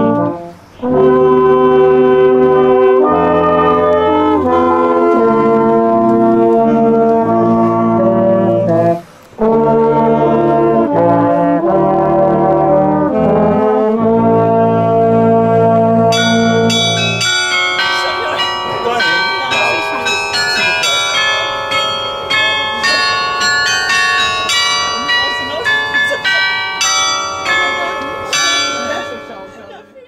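Small brass ensemble of trombone, euphonium and tenor horn playing slow, sustained chords, with short breaks about a second in and about nine seconds in. From about sixteen seconds the low held notes stop and a run of short, bright, ringing notes takes over, fading away at the end.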